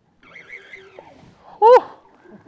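A man's excited whoop, 'Woo!': one short, loud shout rising in pitch near the end, after faint background sound.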